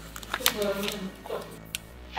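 Quiet, low voices with a few small clicks scattered through.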